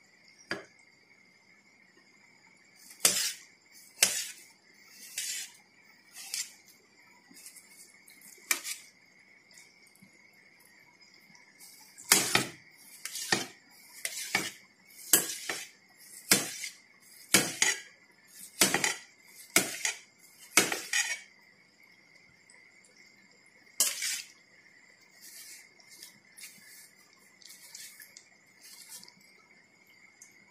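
Kitchen knife cutting through watermelon and striking a stainless steel plate: sharp clinks, a few scattered at first, then a run of about one a second as the fruit is cut into cubes.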